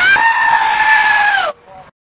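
A goat screaming: one long, human-like bleat of about a second and a half, steady in pitch and dropping slightly before it cuts off.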